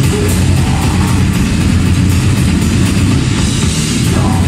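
Grindcore band playing live at full volume: heavily distorted guitars and bass over fast drumming with rapid cymbal hits.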